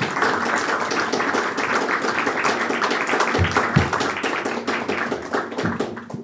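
An audience applauding, a dense steady clapping that thins out near the end, with two low thumps about three and a half seconds in.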